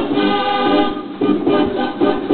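Music from a Mortier dance organ played through a Sanyo boombox's loudspeakers: sustained chords that change about twice a second, with the treble cut off.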